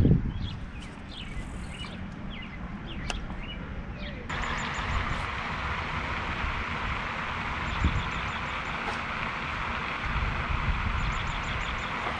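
Outdoor ambience: low wind rumble on the microphone with a few bird chirps, then about four seconds in a steady hiss comes in suddenly and holds, with faint quick ticking over it.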